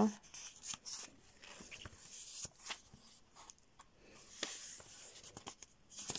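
Paper pages of a small sketchbook being handled and turned: faint rustling with scattered soft ticks of paper, the sharpest about a second in and again past four seconds.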